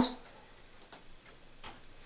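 A few faint, irregular light ticks and clicks in a quiet room.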